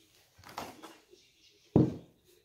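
A brief rustle about half a second in, then a single sharp thud near the end: a Magic Cooker pot being set down on the table.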